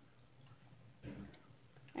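Faint clicks of tiny toy miniature pieces being handled and set down on a tabletop.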